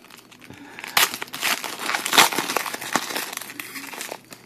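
Crinkling and rustling as a pack of football trading cards is handled and flipped through, in irregular bursts that start about a second in and are loudest just after two seconds.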